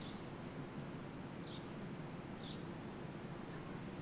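Quiet outdoor ambience: a faint steady hiss with three brief, high chirps from a small bird, spaced about a second apart.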